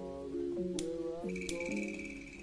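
Background music: plucked guitar chords changing every fraction of a second, with sharp percussive clicks and a steady high tone coming in about halfway through.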